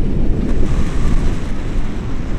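Wind buffeting the microphone of a camera carried on a tandem paraglider in flight: a loud, gusty low rumble.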